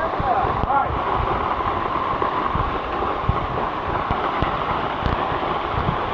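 Steady rushing of a small forest waterfall, with scattered low bumps on the microphone.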